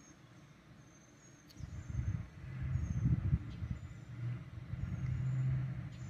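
Low rumble of a motor vehicle, coming in about a second and a half in after near silence and running on with a low hum.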